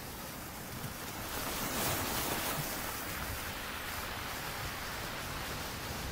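A steady rushing noise, like surf or static hiss, swelling about a second and a half in and then holding even.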